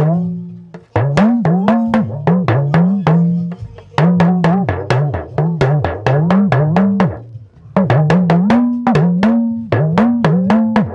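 Small Yoruba hourglass talking drum struck with a curved stick, with quick strokes whose pitch bends up and down as the drum is squeezed under the arm. It plays a proverb in a song-like way rather than a speech-like one, in phrases with short breaks about a second in, midway and near the three-quarter mark.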